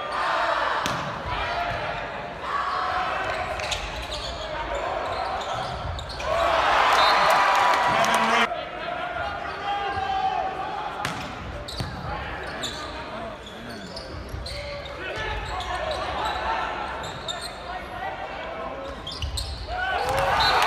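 Volleyball being struck during rallies in an indoor arena: sharp slaps of serves, passes and spikes, with players calling out and crowd voices throughout. A louder burst of shouting about six seconds in, as a point is won.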